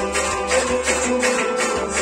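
Kashmiri Sufi folk music with no singing: harmonium chords held steadily under plucked strings and a regular beat of light percussion strokes.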